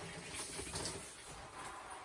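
Water spraying steadily from a handheld RV shower head, with only the cold tap turned fully on.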